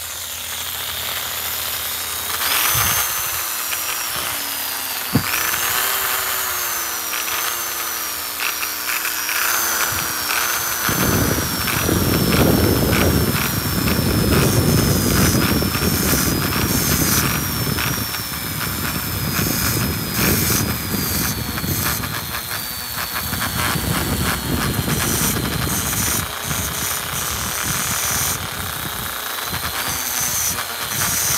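Corded rotary tool with a small grey abrasive point starting up about two seconds in with a high, slightly wavering whine. From about eleven seconds the spinning point is worked against a copper ring's edge, adding a rough grinding rasp, and the whine's pitch sags slowly under the load.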